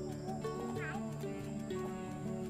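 Background instrumental music with held melodic notes, and a brief high warbling note a little under a second in.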